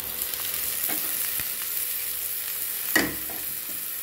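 Chopped beetroot dropped into hot oil with frying onions in a pan, sizzling steadily as it lands and is stirred. A single sharp knock about three seconds in.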